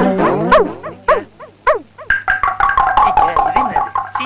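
Comic film sound effects: a run of short squeaky chirps that swoop up and down. About two seconds in, a rapid repeating tinkling figure on a few high notes takes over.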